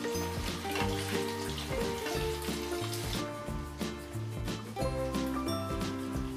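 Background music: a light, upbeat instrumental tune with short stepped notes over a steady bass line. A faint sizzle of paneer frying in hot oil lies beneath it.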